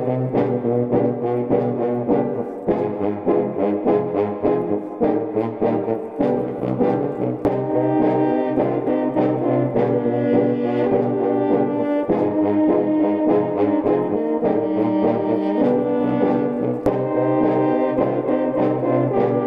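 A student composition for a brass ensemble of about eleven players: sustained chords with many short, rhythmic repeated notes, continuous throughout.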